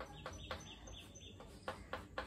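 Chalk tapping and scraping on a blackboard as short tick marks are drawn along a scale, with a quick run of short high chirps about a quarter of a second in that stops at about a second and a half.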